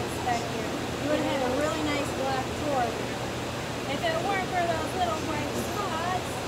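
Indistinct chatter of several voices, none of it clear enough to make out, over a steady low hum.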